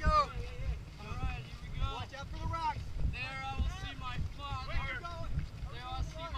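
Indistinct men's voices talking and calling out in a group, with wind rumbling on the microphone.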